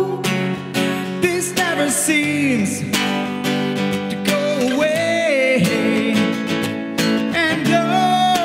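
Acoustic guitar being strummed while a man sings long notes that slide up and down in pitch, without clear words.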